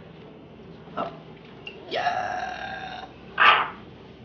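A man's straining noises while pulling on a shoe: a short grunt about a second in, then a held high-pitched whine lasting about a second, then a sharp huff of breath, the loudest of the three.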